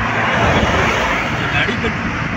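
Steady road noise from a car travelling at motorway speed: tyres on asphalt and wind rushing past.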